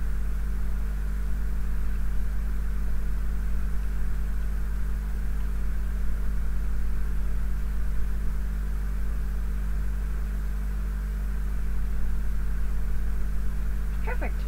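A steady low electrical hum with a faint hiss that does not change. No distinct handling or tool sounds stand out.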